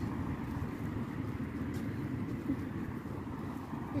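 Steady low outdoor rumble with no distinct events, the kind of background noise a walking microphone picks up outdoors.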